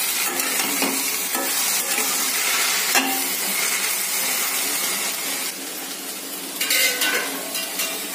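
Cut okra sizzling in hot oil in a stainless steel pan as it is stir-fried with a metal spatula. The spatula scrapes and knocks against the pan a few times over the steady sizzle.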